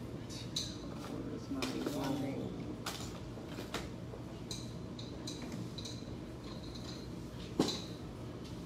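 Scattered light clicks and taps of small hard objects being handled on a table, with one sharper click near the end.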